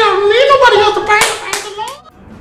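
A man speaking in a high falsetto old-woman voice, the pitch swooping up and down, with two sharp hits like hand claps about a second in. The voice breaks off just before the end.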